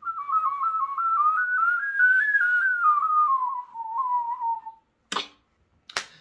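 A beatboxer's recorder whistle: one continuous mouth whistle that flips rapidly back and forth between two close pitches, like a recorder. The line climbs gradually, then falls again, and stops after about five seconds. A short breath noise follows near the end.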